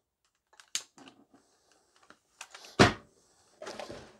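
Hard plastic parts of a Dyson V7 cordless vacuum being handled: a few light clicks, then one sharp knock about three seconds in.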